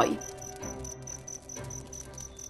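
Quiet soundtrack background in a pause between lines: a high, short chirp repeating evenly about five times a second, like crickets, over a low steady hum.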